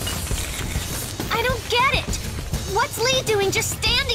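Anime fight-scene soundtrack: background music and low rumble under a string of about five short wordless vocal cries from a character, starting about a second in.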